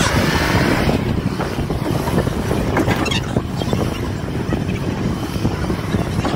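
A Ford pickup truck driving across a muddy grass field, its engine running and tyres rolling through the mud, heard close beside the front wheel as a loud, steady noise.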